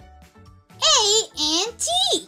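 Soft children's background music with a steady beat, then, about a second in, a high-pitched child-like voice calls out three times, loud and with a wobbling pitch.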